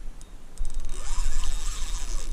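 Spinning reel under load from a big hooked pike, making a rapid ratcheting click. A few ticks come about half a second in, then dense, steady clicking from about a second in.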